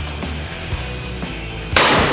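Background rock music with a steady beat, then near the end a sudden loud crash as a sledgehammer smashes a wooden board and the cinder blocks it rests on.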